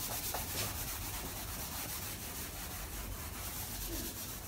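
Whiteboard eraser rubbing back and forth across a whiteboard in repeated strokes, a steady quiet wiping sound as marker writing is erased.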